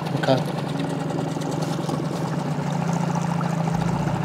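Small outboard motor on an inflatable boat running steadily, a constant low hum.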